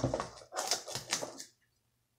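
Scissors cutting open a mailed box: a few short, crackly snips and rustles of the packaging, stopping about one and a half seconds in.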